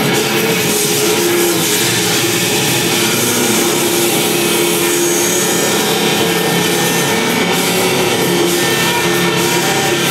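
Loud experimental noise music played live on a tabletop setup: a continuous wall of harsh, hissing noise over a few held low drone tones, with no breaks.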